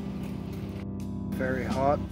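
Background blues music with steady held notes, and a man's voice starting near the end.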